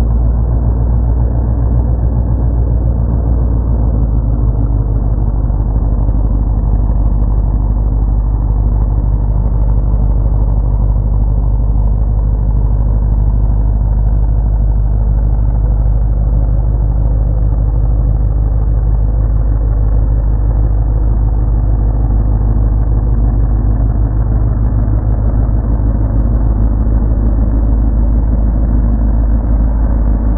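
Mud bog truck's engine running hard and steady as the truck churns through a mud pit.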